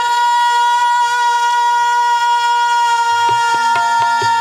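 A man's loud, drawn-out call held on one high, steady note over the microphone. Drum strokes join in a rhythm about three seconds in.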